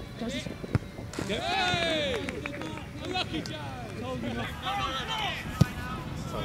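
Footballers shouting on an open pitch: one long, high call that rises and falls about a second in, then several overlapping shorter calls. There is a single sharp thud near the end.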